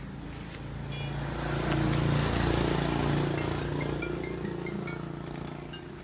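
A motor vehicle passing by: its engine hum swells over about a second, is loudest two to three seconds in, then fades away.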